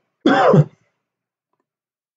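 A man clearing his throat once, briefly, about a quarter of a second in.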